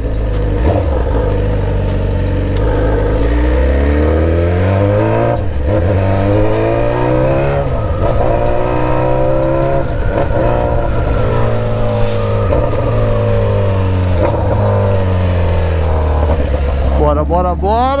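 A BMW S1000RR's inline-four with an aftermarket exhaust, very loud, accelerating hard: the revs climb and drop back at each upshift. Over the second half the revs fall away as the bike slows and shifts down.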